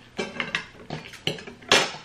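Eating sounds while chewing a bite of sandwich: a handful of short, sharp clicks and taps, the loudest about three quarters of the way through.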